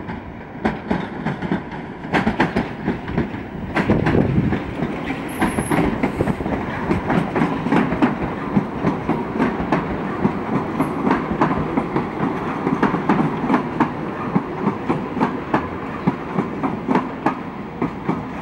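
Electric multiple-unit commuter trains passing close by, wheels clicking irregularly over rail joints and points over a steady running rumble, getting louder about four seconds in.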